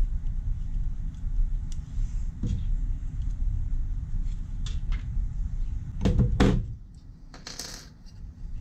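Workbench handling noise: a low steady rumble with a few light clicks, then two louder knocks about six seconds in as a tool is set down on the bench, and a brief rustle near the end.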